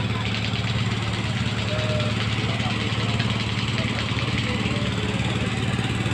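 An engine-driven generator runs steadily with an even low hum, powering the sound system.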